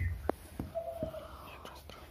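Faint, low speech on a phone call, close to a whisper, with a few light clicks.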